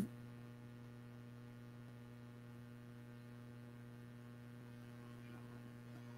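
Faint, steady electrical hum, like mains hum in the recording, with no other sound.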